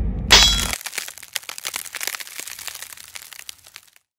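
Logo-animation sound effect: a low rumble ends in a sharp hit, followed by a long trail of crackling that fades away.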